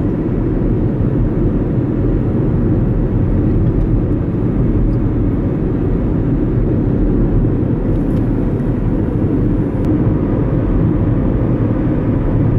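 Steady low rumble of a moving car heard from inside the cabin, tyre and engine noise at cruising speed.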